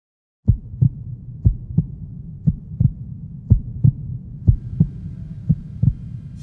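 Heartbeat sound effect: paired low thumps, a double beat about once a second over a low hum, starting about half a second in.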